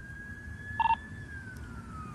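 A siren wailing faintly, one slow rise and fall in pitch, with a short electronic beep just under a second in.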